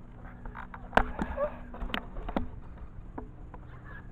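A few sharp knocks and clunks from a handheld GoPro action camera being turned and handled, the loudest about a second in and others spread over the next two seconds, over a faint low hum.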